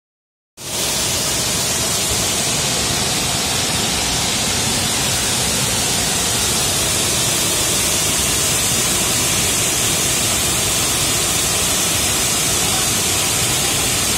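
Waterfall pouring in many streams over a rock face into a pool: a loud, steady rush of falling water, heavy in hiss.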